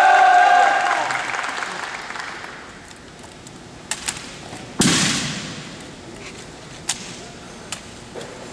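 A long shouted command fades out in the hall's echo during the first second or so. Then a drill rifle is spun and handled in a solo exhibition drill routine: a few light clicks, and one loud sharp smack of the rifle about five seconds in that rings on through the large arena.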